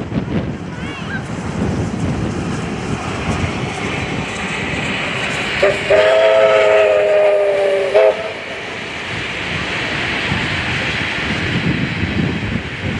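Steam locomotive running past with a low rumble, then a chime steam whistle sounds one steady three-note chord for about two seconds, midway through. A steady hiss of wind and distant running trains follows.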